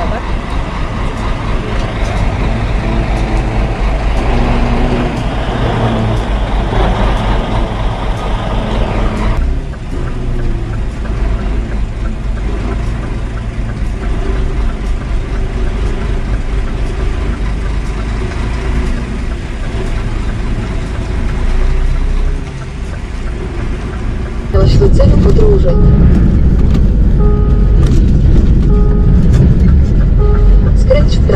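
A semi-truck's diesel engine running at low speed while the rig is manoeuvred through a tight street, a steady low rumble that gets louder about 25 seconds in.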